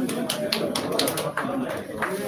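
A few people clapping sparsely, irregular sharp claps about a quarter to a half second apart, over background voices.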